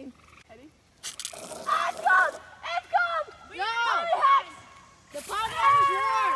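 Children squealing and laughing in short rising-and-falling cries, then, about five seconds in, a girl's long, steady, high scream as she goes down a slide.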